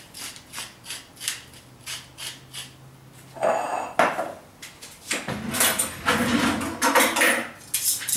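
Hand-twisted pepper mill grinding peppercorns over a salad: a quick run of small, even clicks. About three and a half seconds in comes a louder scrape, then a stretch of louder rubbing and clatter from handling at the counter.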